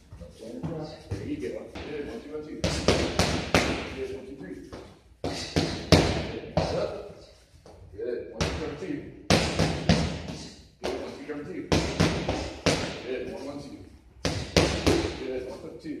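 Gloved punches smacking into focus mitts in quick combinations of two to four strikes, each group a second or two apart.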